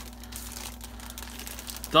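Thin plastic packaging of a stack of spinach tortilla wraps crinkling irregularly as it is gripped and lifted.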